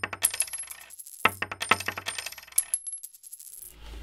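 Two coins dropped one after the other onto a hard surface, each clattering and bouncing with a high metallic ring, used as a sound effect.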